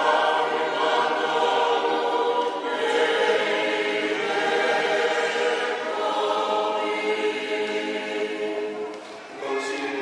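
A church choir singing, many voices together; the singing dips briefly about nine seconds in before sound picks up again at the end.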